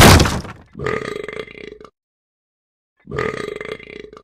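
Comedy sound effects: a loud, sudden noisy hit at the start, then a croaky, burp-like cartoon voice saying "uh-oh" twice, about two seconds apart.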